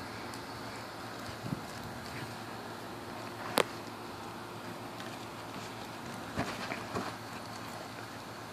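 A puppy playing with a balloon: a few scattered soft knocks and one sharp tap about three and a half seconds in, over a steady background hiss.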